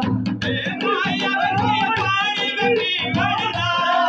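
A man singing a folk song, with a fast, steady low beat under his voice.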